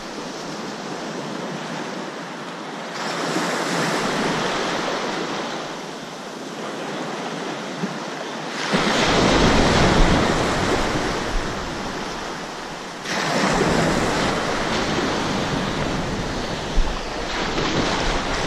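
Shallow ocean surf washing and breaking close by, swelling and easing. About halfway through it grows loudest, with a low wind rumble on the microphone, then settles again.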